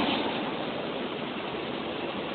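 A pause in a man's speech: steady background hiss of a low-bandwidth recording, with the last words fading out at the start.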